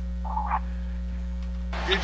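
Steady low electrical mains hum on the audio line, with a brief faint blip about half a second in; a man's voice starts near the end.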